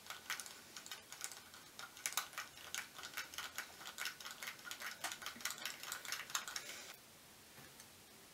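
LEGO plastic pieces clicking and scraping against each other as hands work a grey LEGO piece against a studded brick-built ball, in a rapid, irregular run of small clicks that stops about a second before the end.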